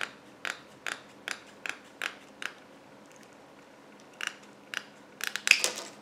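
Scissors snipping through a sheet of plastic canvas mesh: about seven crisp cuts in steady succession, a pause of nearly two seconds, then a few quicker snips near the end.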